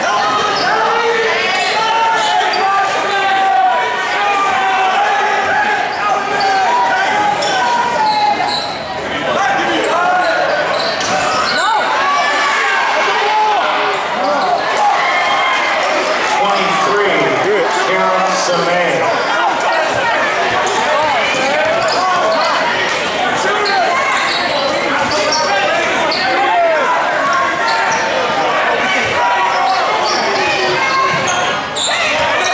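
Basketball game in play in a gym: a basketball bouncing on the hardwood court, with many voices from the crowd and benches shouting and talking, echoing in the large hall. The level holds steady throughout.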